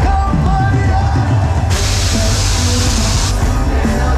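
Live band music playing loud, with drums, bass and a sung melody, heard amid a crowd. About two seconds in, a sudden steady hiss cuts in over the music for about a second and a half and stops abruptly, as a stage CO2 smoke jet fires.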